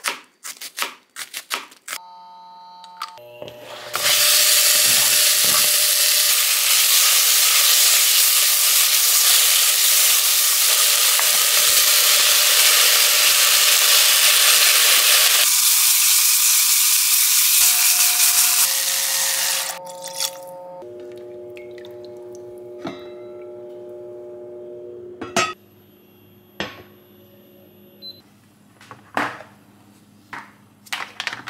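Pork and sliced onion sizzling loudly while being stir-fried in a stainless steel pot. The sizzle starts suddenly about four seconds in and cuts off a little past the middle. Before it come a few quick knife chops through onion on a cutting board, and soft background music plays underneath.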